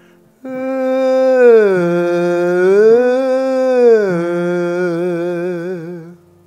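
A man singing one unbroken tone without any clear vowel, with a pencil held under his tongue to free it from pulling back. The tone starts about half a second in, glides down, back up and down again, and wavers with vibrato near the end.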